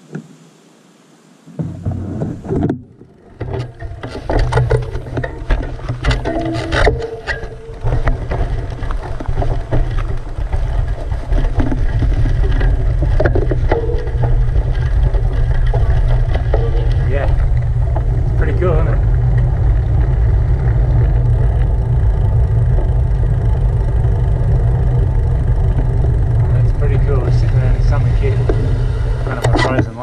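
Strong wind buffeting the camera microphone: a loud, steady low rumble that begins about two seconds in and holds to the end, with faint voices under it.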